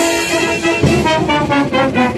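Military band playing with brass, a held chord and then a run of quick, short repeated notes from about a second in.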